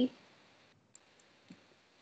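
Near silence with two faint clicks from working a computer, about a second in and again half a second later.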